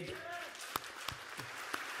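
Audience applause in a large hall, a steady soft patter of many hands clapping.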